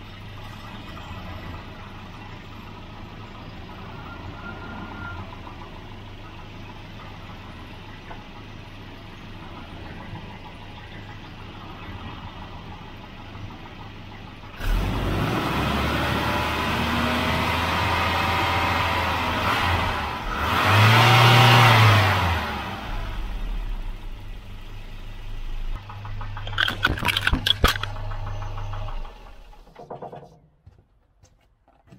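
A 1988 Volvo 240's engine running, much louder from about halfway, revved once up and back down. Near the end comes a quick clatter of knocks as the camera falls against the engine's drive belt.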